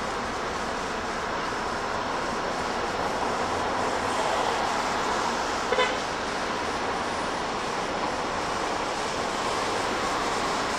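Steady noise of trains and traffic around a large railway station, with a brief double horn toot a little before six seconds in.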